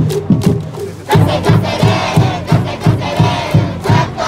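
A school cheering section in a baseball stadium's stands chants and shouts in unison over cheering music, with a bass drum beating about three times a second from about a second in.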